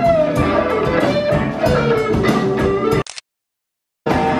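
Live blues band led by electric guitar, a lead line of sliding, bent notes over the band. It cuts off abruptly about three seconds in, leaving silence.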